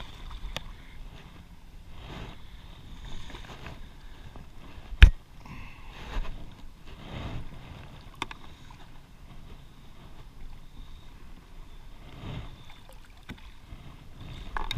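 A carp arrowed while bowfishing thrashes and splashes in the water at the side of a boat as it is hauled up by the arrow and line. There is one sharp, loud knock about five seconds in.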